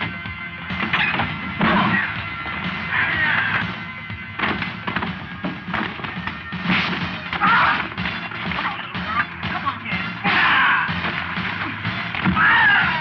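Film fight soundtrack: background music under a run of sharp hit-and-thud sound effects from a scuffle, with shouts and grunts between them.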